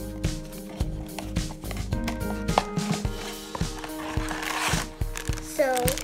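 Background music over the hand-opening of a cardboard Funko mystery box: small clicks and taps of the cardboard, then a rustle about four seconds in as the black plastic bag inside is pulled out.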